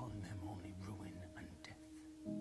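Film trailer soundtrack: a voice speaking a short line over a held music drone.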